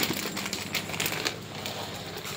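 Irregular crinkling and rustling of packaging, with many small clicks, as it is handled.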